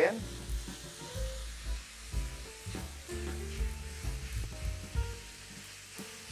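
A soy-sauce-based sauce sizzling in a frying pan over a portable gas burner, with a wooden spatula stirring and scraping through it. Soft background music plays underneath.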